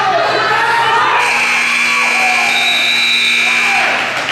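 Gymnasium scoreboard buzzer: a steady electronic tone that starts about a second in and holds for nearly three seconds before cutting off. A crowd cheers and shouts underneath.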